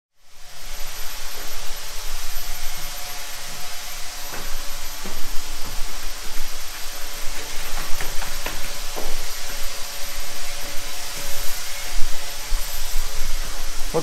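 Steady hiss-like background noise, fairly loud, with a few scattered knocks between about four and nine seconds in.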